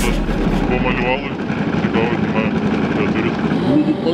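Electronic music with a heavy bass fades out about a second in. It gives way to railway-station hubbub: people's voices over a steady hum from the train standing at the platform.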